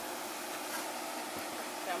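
Diced beef for carne asada frying in a pan on the stove, a steady sizzle. A voice starts speaking near the end.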